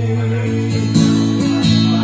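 Acoustic guitar strumming chords, with fresh strums about a second in and again a little after.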